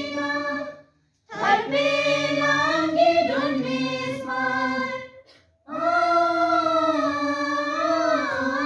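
A group of teenage school students, boys and girls, singing a slow song together in unison without accompaniment. They hold long notes, with two short breath pauses, about a second in and just after five seconds.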